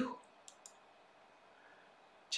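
Two faint, short clicks in quick succession about half a second in, against quiet room tone.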